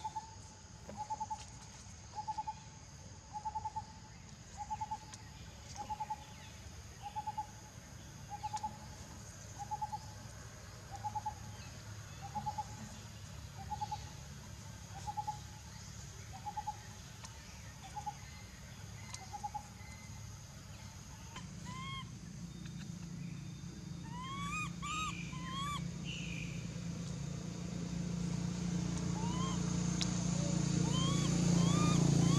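A bird call, a short double-pulsed note repeated steadily about once every 1.2 seconds, then stopping about two-thirds of the way through. Afterwards a few short rising chirps sound, and a low engine hum grows steadily louder toward the end.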